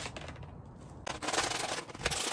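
A sharp knock at the very start, then hand sanding: sandpaper rubbed back and forth over a mesh truck grille piece, loudest in the second half.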